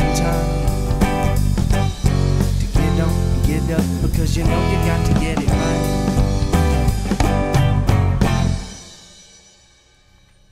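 A rock trio of electric guitar, electric bass and drum kit playing together. The song ends about eight and a half seconds in, and the last notes ring out and fade away.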